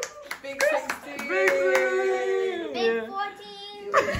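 A few people clapping, with voices holding long notes over the claps, as a birthday girl finishes blowing out her cake candles. The claps fade out about two seconds in, and the voices slide down and trail off near the end.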